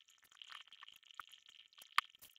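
Faint steady hiss with many small, irregular clicks, and one sharper click right at the end.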